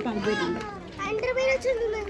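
Only voices: a child's high-pitched voice talking, with other voices around it.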